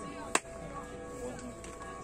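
A football kicked on the pitch: a single sharp thud about a third of a second in, over a faint steady background.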